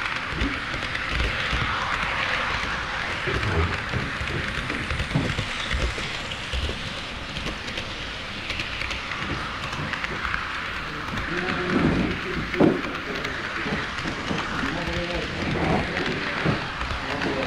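HO scale model train rolling along KATO Unitrack with the camera aboard: a steady rushing hiss of wheels on the rails, with irregular low knocks over the track joints. People's voices murmur in the background.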